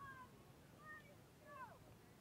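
Faint, distant high-pitched calls from young players' voices across the field: a few short shouts, one falling in pitch near the end.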